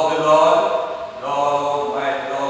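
A man preaching loudly into a microphone, his words drawn out on long, held notes in a sing-song, chanting cadence.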